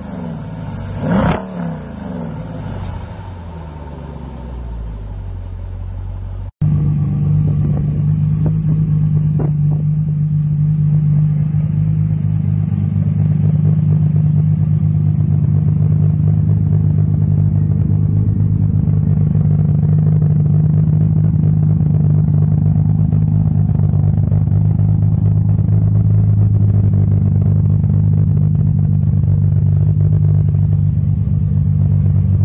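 A car's exhaust blipped once about a second in, rising and falling in pitch, then settling to idle. After a sudden cut, a different car's engine idles steadily and louder, with a deep, low note.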